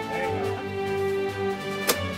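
Background music with sustained, steady tones; a single sharp click sounds near the end.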